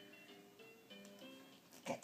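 Faint, simple tune of clear held notes stepping from one to the next, the kind played by a baby's musical toy. It is cut by one short, sharp noise near the end.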